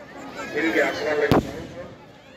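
A single firework bang about a second and a half in, sharp and deep, over a crowd of people talking.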